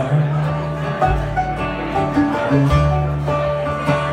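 Live bluegrass band playing an instrumental stretch between sung lines: banjo, strummed acoustic guitar, mandolin and upright bass, the bass changing notes about every second.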